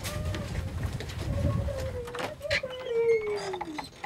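A person's voice singing one long held note that wavers and then slides down in pitch near the end, with a few light knocks behind it.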